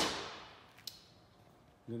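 A single sharp knock of a thin wooden strip set down on the workbench, dying away over about half a second, followed by a faint tick just under a second later.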